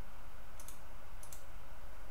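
Computer mouse clicking: two quick pairs of faint clicks, over a steady low hum from the recording.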